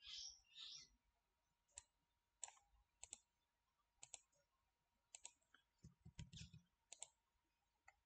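Faint computer mouse clicks, about ten scattered irregularly over near silence.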